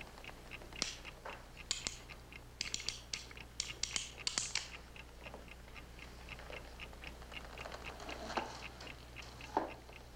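A clock ticking steadily, about four ticks a second, with bursts of small metallic clicks between about one and five seconds in as a revolver is handled.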